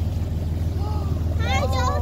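Motorboat engine running with a steady low hum, a woman's voice exclaiming over it in the second half.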